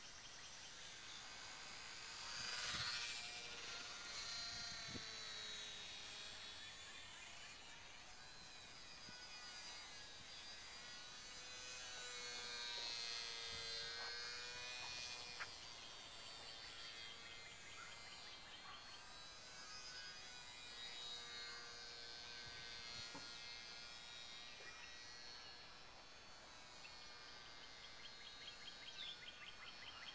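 Faint buzzing whine of a HobbyZone Champ micro RC plane's small electric motor and propeller in flight overhead. Its several tones slide up and down in pitch, and it is loudest about three seconds in and again around twelve to fifteen seconds.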